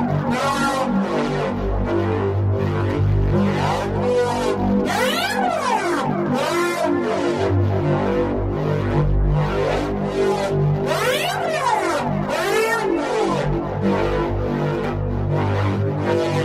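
u-he Zebralette software synthesizer playing its 'SFX Annnyyya' preset from a MIDI sequence: a steady pulsing electronic pattern over low bass notes, with sweeps that rise and fall in pitch every few seconds as the modulated wavetable shifts.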